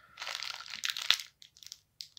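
Plastic packaging crinkling and rustling as it is handled for about a second, then a few light clicks near the end.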